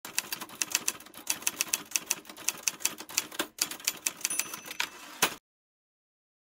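Typewriter sound effect: rapid, slightly uneven key strikes, several a second, ending with one loud strike a little after five seconds in, after which the sound cuts off abruptly.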